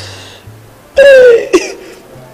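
A man's coughing fit: a rasping breath, then a loud hoarse outburst that falls in pitch about halfway through, over low background music.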